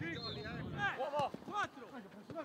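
Men's voices shouting and calling out during a football passing drill, with several short sharp knocks of the ball being kicked in the second half.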